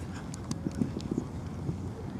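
Players' footsteps running on artificial turf: an irregular patter of soft thuds, with wind noise on the microphone.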